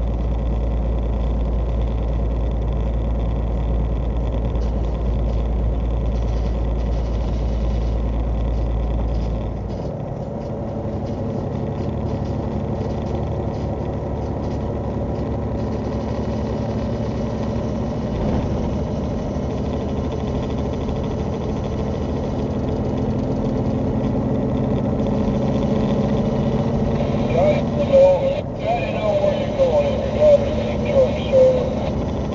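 Semi truck's engine and road noise heard inside the cab at highway speed: a steady drone, with a deep low rumble that drops away about ten seconds in. A voice comes in near the end.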